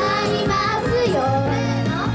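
Live performance of a Japanese idol pop song: young girls singing into microphones over loud backing music through a stage PA.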